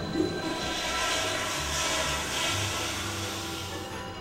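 A toilet flushing, a rushing of water that builds and fades over a few seconds, over background music.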